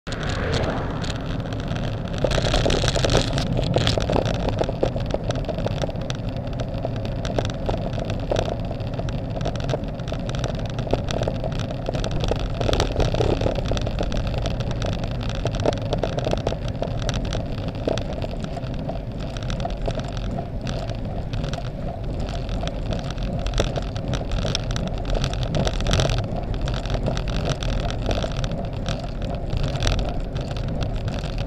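Wind rushing over an action camera's microphone on a moving road bicycle, mixed with tyre noise on asphalt, steady throughout, with a brief louder, brighter rush about two to four seconds in.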